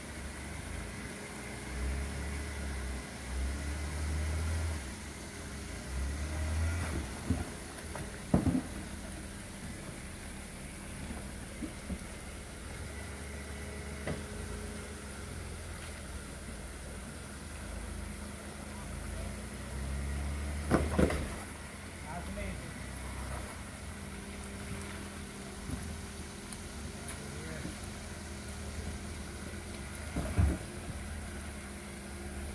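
Jeep Wrangler engine idling and taking short bursts of throttle as it crawls over rock ledges. There is a sharp knock about eight seconds in and a doubled knock about twenty-one seconds in.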